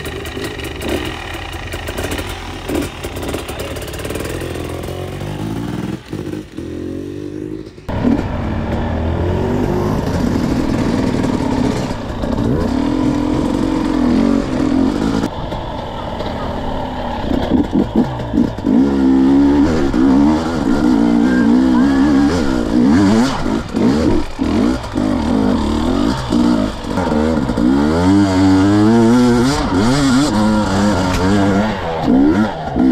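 Two-stroke engine of a KTM 250 EXC enduro motorcycle being ridden over rough ground, its pitch rising and falling continually with the throttle. The sound is steadier in the first few seconds, changes suddenly about eight seconds in, and grows louder with repeated revving in the second half.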